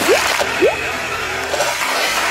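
Car tyre rolling over and crushing plastic cups and small toys: a dense crackling, squishing noise throughout, with two short rising squeaks in the first second.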